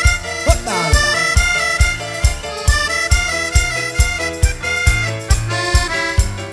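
Instrumental cumbia from a live band: a steady beat of about two strikes a second under a layered melodic line, with a falling pitch swoop near the start.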